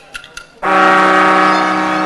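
A game-show clock ticking faintly, then about half a second in a loud, steady brass-like horn blast lasting under two seconds: the studio signal that the clock has run out and the contestants may run for the bell.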